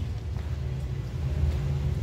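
Low, steady rumble with no speech over it.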